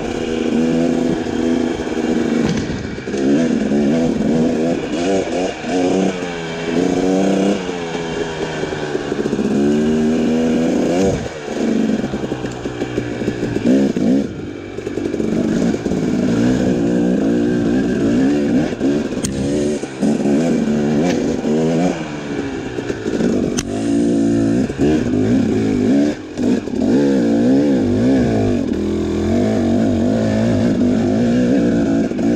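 2018 Husqvarna TX 300's two-stroke single-cylinder engine under load, revving up and down as the throttle is worked, its pitch rising and falling every second or two, with a few brief drops off the throttle.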